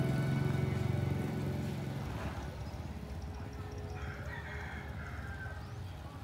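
Background music fades out in the first two seconds. About four seconds in, a rooster crows once, a wavering call lasting about a second and a half.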